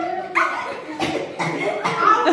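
A dog barking: about four short, sharp barks roughly half a second apart.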